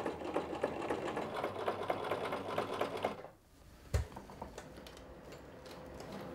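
Home sewing machine stitching through seatbelt webbing with a rapid, even needle rhythm. The stitching stops about three seconds in and a single knock follows about a second later. Fainter ticking from the machine continues near the end.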